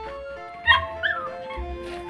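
A small dog yelping twice in quick succession, about a second in, over steady background music.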